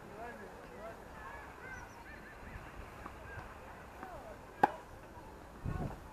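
A single sharp crack of a tennis ball struck by a racket about two-thirds of the way in, over a background of repeated short bird calls. A dull low thump follows near the end.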